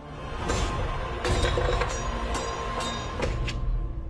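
Background music with a strong low end and a few sharp hits.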